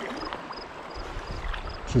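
Steady creek water and light wind, with a faint high chirp repeating about two to three times a second and a few soft clicks.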